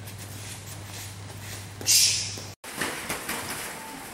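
Room sound of gym sparring footage: a steady low hum, with a short sharp hiss about halfway through that is the loudest moment. The sound cuts off abruptly just past the middle and gives way to fainter room noise.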